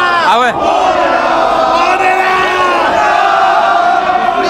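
Crowd of street demonstrators shouting and calling out loudly, many voices at once. One close voice yells about half a second in, and long held calls carry through the second half.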